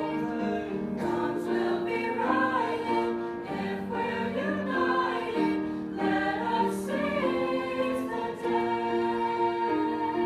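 A group of voices singing together in a show-tune style, over steady sustained accompaniment chords.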